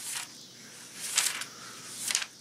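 Thin Bible pages being turned by hand: a faint paper rustle at the start and a louder, crisper one about a second in.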